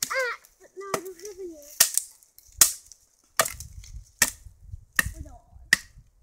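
A wooden stick striking wood again and again: sharp cracking whacks, about seven of them, roughly one every 0.8 seconds.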